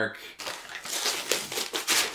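Brown kraft paper wrapping crinkling and rustling in a quick run of crackles as a book parcel is unwrapped by hand.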